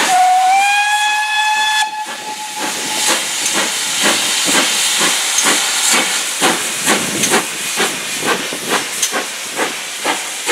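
GWR Manor class 4-6-0 steam locomotive 7820 'Dinmore Manor' sounds its whistle, a single blast of about two seconds that rises slightly as it opens, then works hard under load with steady exhaust chuffs about twice a second.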